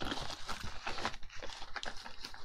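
Packaging of a skincare gift box rustling and crinkling as it is handled and a tub is lifted out, a quick run of small, irregular crackles.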